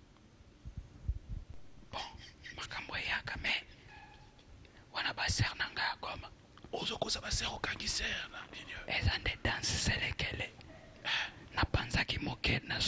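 Speech: a man talking into a handheld microphone in short phrases with brief pauses.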